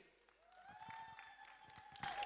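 Faint scattered hand-clapping as applause begins, with a long held high note running over it from about half a second in.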